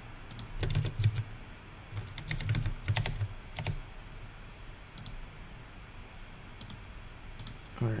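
Typing on a computer keyboard: two bursts of quick keystrokes, then a few scattered keys later on.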